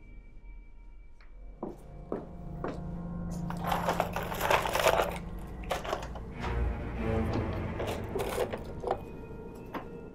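Clattering and knocking of objects being rummaged through in a kitchen drawer, with background music playing.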